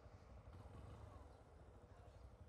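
Near silence: only a faint, steady low rumble from the moving Yamaha Ténéré 250 motorcycle.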